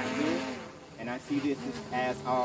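People's voices: a few short, indistinct snatches of talk, with a pause between.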